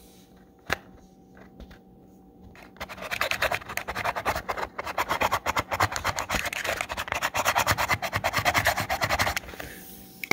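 Fingernail scratching the grey scratch-off coating off a printed label on a thin cardboard box in rapid, continuous strokes. It starts about three seconds in and stops shortly before the end, after a single click near the start.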